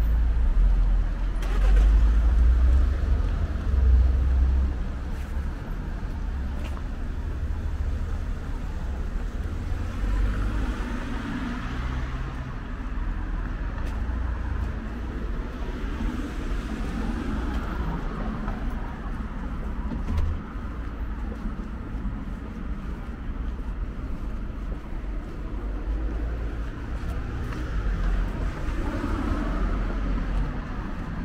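Urban street traffic: cars driving past on a city street, a continuous low rumble that swells as each vehicle passes, loudest in the first few seconds.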